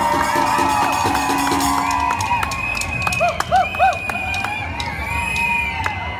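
Street drum band playing in a parade, drum hits under a crowd's cheers and whoops, with three short rising-and-falling whoops loud about halfway through.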